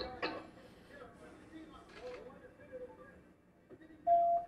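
Faint, muffled talk in body-camera audio played back over a speaker, with a short knock about a quarter second in.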